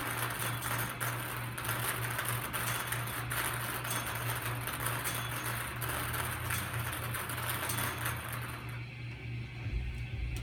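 Numbered balls rattling and tumbling in a hand-turned wire bingo cage: a continuous clatter of many small clicks that dies away near the end as the cage stops.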